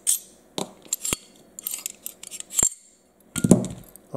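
Sharp metal clicks and clinks as a 1911 pistol is stripped by hand, the steel barrel slid out of the slide and the parts handled. A louder, duller knock comes near the end as a part is set down on the wooden table.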